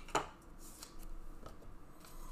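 Trading cards and their plastic holders being handled on a desk: one sharp click just after the start, then softer taps and rustling.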